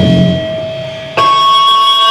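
Live grindcore band: a loud low hit at the start dies away while amplified electric guitars ring on with steady high feedback tones. About a second in, the guitar sound jumps back up loud.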